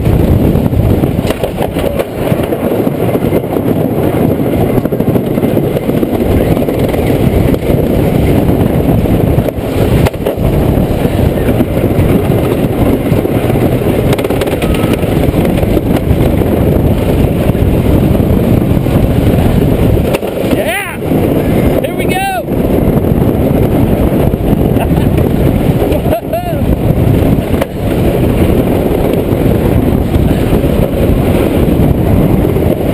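Thunderhawk wooden roller coaster train running fast along its wooden track, a loud continuous rumble and rattle heard from the front seat with heavy wind rush on the microphone. A couple of brief high rising-and-falling cries come about two-thirds of the way through.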